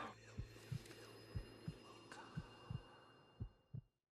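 Faint low thumps in pairs, about one pair a second, in a heartbeat-like rhythm over a faint steady hum.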